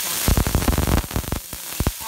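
Minced garlic sizzling in hot olive oil in a pot, browning toward burnt, while a metal spoon stirs it with a quick run of clicks and scrapes against the pot from about a quarter-second in to near the end.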